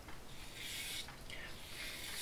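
Faint scraping of a Phoenix Artisan Accoutrements DOC double-edge safety razor cutting stubble through shaving gel on the scalp, in short strokes against the grain.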